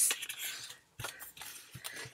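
A box lid being opened by hand: a rustle at the start, then a sharp click about a second in and a few lighter clicks and knocks from the lid and packaging.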